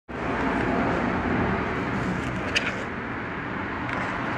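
Steady background din of a restaurant dining room, with a brief sharp click about two and a half seconds in.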